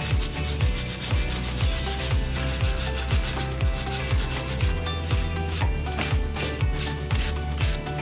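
A wire brush scrubbing the metal upper mount of a rear shock absorber clamped in a vise, in quick repeated strokes. Background music with a steady beat plays underneath.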